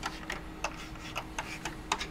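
Irregular light clicks and taps from a hand working the faders and buttons of a Behringer BCF2000 control surface, several in the two seconds.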